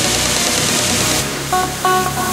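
Progressive psytrance in a kickless break: a dense rushing noise sweep whose top end is cut away a little past halfway, then two short synth notes near the end.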